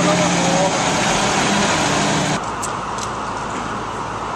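School bus engine idling close by: a loud, steady drone with a low hum, under faint voices. About two and a half seconds in it cuts off suddenly, leaving quieter street noise.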